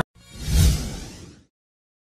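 Whoosh sound effect for an edited graphic transition: a single swelling swish with a low boom beneath it, peaking about half a second in and fading out within about a second.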